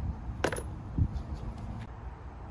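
Tools and parts being handled in a car's engine bay: a sharp metallic click about half a second in, then a dull knock about a second in, over a low steady rumble.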